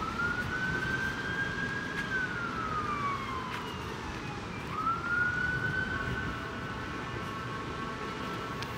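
Emergency vehicle siren wailing over street noise: it rises and holds, slides down over about two seconds, then rises again about five seconds in.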